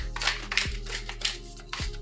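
Handheld pepper mill grinding black pepper in several short scratchy bursts, over background music with a steady beat.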